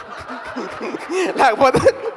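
A man laughing into a handheld microphone, building to its loudest about a second and a half in.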